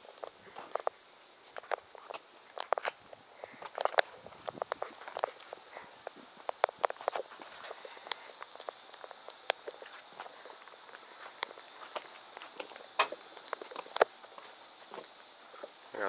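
Footsteps on a paved driveway: an uneven run of short, sharp steps and scuffs.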